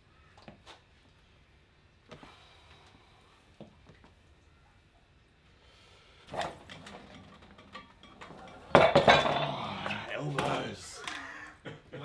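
A vector wrench handle on a cable pulley being set and lifted: a few light metal clicks from the carabiner and strap, then sharper knocks about six seconds in. From about nine to eleven seconds comes the loudest stretch, a man straining and grunting through the wrist lift while metal clinks.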